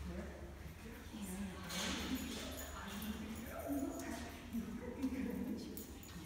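Indistinct voices in a large echoing hall, with a few light taps or footfalls, the sharpest about five seconds in.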